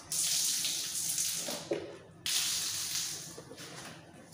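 Water running hard from a tap in two gushes: about two seconds, a sudden cut-off, then about a second and a half more that fades away.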